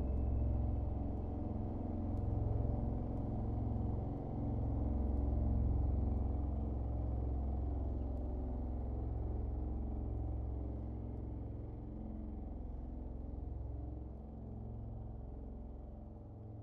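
A low, steady ambient drone of held deep tones that slowly fades out toward the end.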